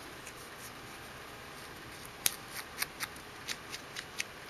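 Ink sponge dauber dabbed onto a small piece of cardstock: a run of light, sharp taps, about four a second, starting about halfway through.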